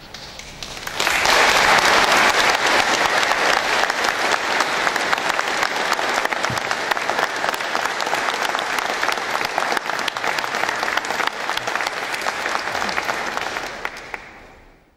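Audience applauding: the clapping swells in about a second in, holds steady, and dies away near the end.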